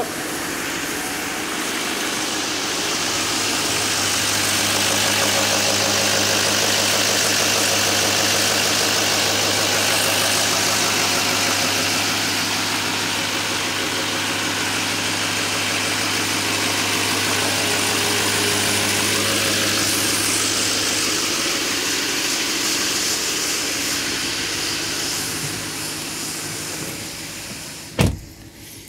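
2016 Chevy Silverado 3500's 6.6-litre Duramax V8 turbodiesel idling steadily just after being started, a little louder in the middle and quieter near the end.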